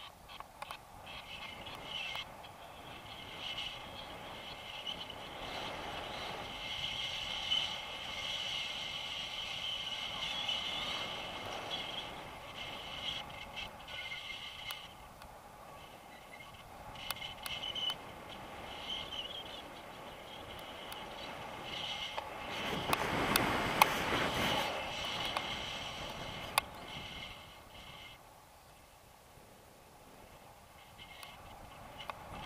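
Wind rushing over the camera's microphone in tandem paraglider flight, with scattered small clicks and scrapes. It swells into a louder gust a little after twenty seconds in.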